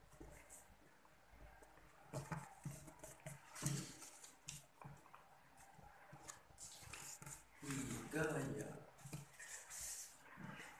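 Origami paper crinkling and creasing under the fingers as it is folded, in short scattered rustles. Near the end a faint voice is heard in the background.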